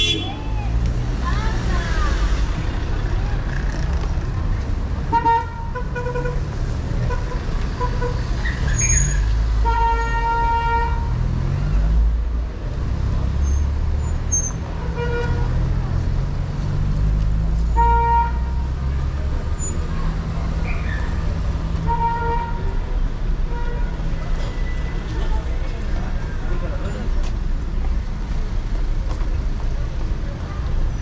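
City street traffic: a steady rumble of car engines passing close by, with several short car-horn toots spread through the middle of the stretch.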